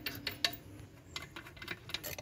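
A few faint, irregular metallic clicks and ticks as a valve cover bolt and its washer are turned in by hand on a Mitsubishi 4D56 diesel's valve cover.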